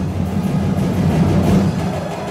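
Drum-led festival dance music, deep drums and percussion playing continuously at a loud, even level.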